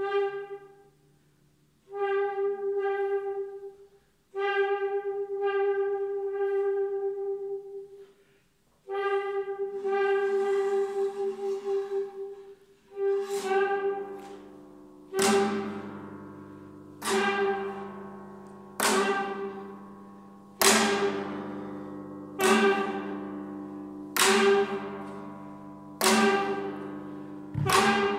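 Saxophone neck fitted with a tube, blown in held notes on one steady pitch in phrases of a few seconds. From about halfway a prepared guitar laid flat is struck about every two seconds, each hit ringing out and dying away.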